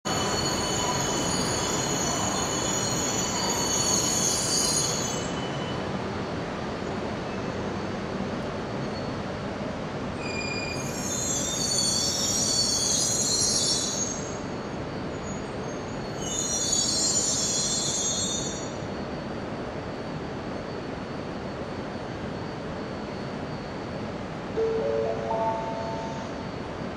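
An arriving E2 series Shinkansen squeals its brakes in three high-pitched bursts as it slows into the platform, over a steady rumble of the stopped trains and the station. Near the end a short rising chime sounds from the station's announcement system.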